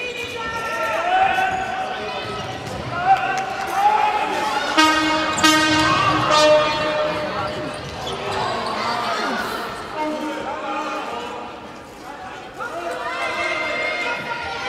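Handball match in a sports hall: a handball bouncing and slapping on the wooden floor, with players and spectators shouting and calling, all echoing in the large hall.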